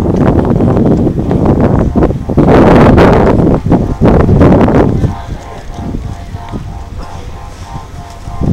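Wind buffeting the microphone in loud, rough gusts for about five seconds, then easing off, over a faint steady hum.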